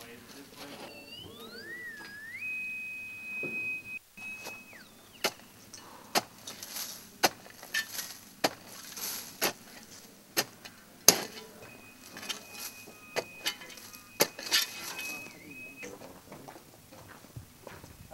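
Shovel digging into dry, loose dirt: sharp blade strikes roughly once a second, with scraping between them, the loudest strike about eleven seconds in. A high electronic tone slides up in pitch and holds steady for a few seconds near the start, and again later.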